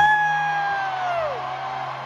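A single long 'whoo!' cheer: it rises sharply, holds one high note and drops away about a second and a half in, over a low steady hum and faint crowd noise.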